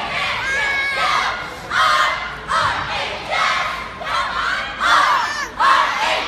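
Many voices shouting a cheer in unison, in loud repeated phrases about once a second: a cheerleading squad's chant, with the crowd yelling along.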